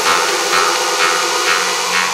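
Electronic dance music build-up: a dense hissing noise sweep over sustained synth chords, with the bass and kick drum cut out.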